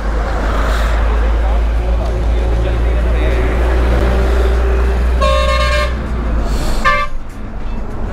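A vehicle horn honks twice in passing highway traffic: a honk of under a second a little past the middle, then a short toot about a second later, over a steady low rumble of traffic.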